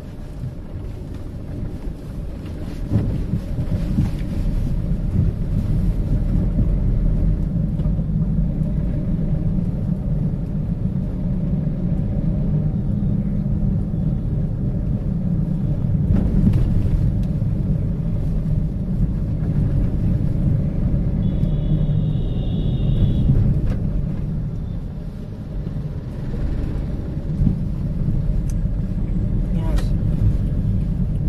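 Steady low rumble of a vehicle's engine and tyres on a potholed road, heard from on board. About two-thirds of the way through comes a brief high-pitched tone.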